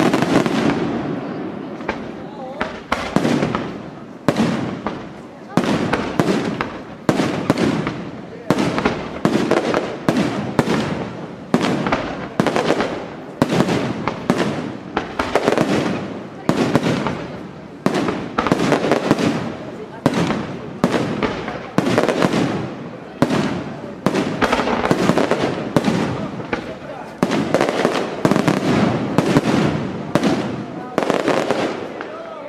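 Aerial firework shells bursting in a rapid barrage, about one or two loud reports a second, each trailing off in a rumbling echo.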